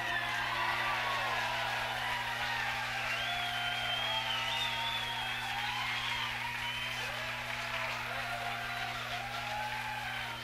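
Live audience applauding, cheering and whistling, slowly dying down, over a steady low electrical hum.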